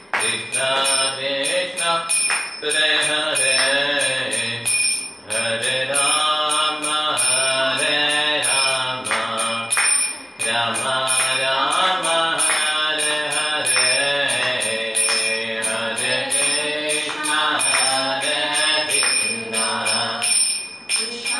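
A man's voice chanting a Hindu devotional mantra in a sung melody, over a steady beat of small hand cymbals.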